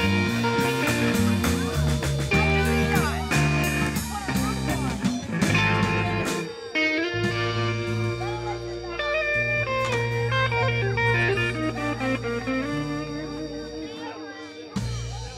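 A live band with drums, bass and electric guitar playing the close of a song. About six seconds in the drums stop and held bass and guitar notes ring on, fading out as the song ends.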